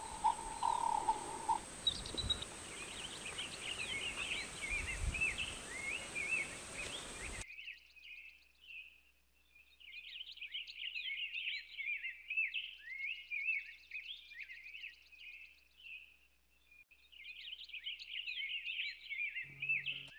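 Small birds chirping and twittering in quick runs of short high notes, with brief pauses. A steady hiss under them cuts off abruptly about seven seconds in, leaving only the birdsong.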